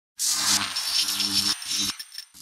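Short intro sound effect: a loud hiss-like rush with a low hum and a thin steady high tone under it, breaking off briefly about one and a half seconds in.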